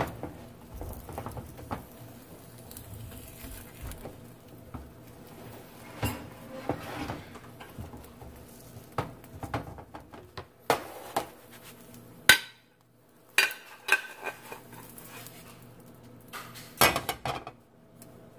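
Spatula and plate knocking and clinking against a nonstick frying pan, several separate sharp knocks a second or more apart, while a thin egg omelette is worked loose and flipped.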